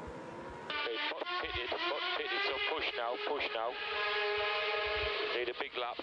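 Formula 1 team radio message: a voice over the narrow-band radio link, starting about a second in and cutting off abruptly at the end.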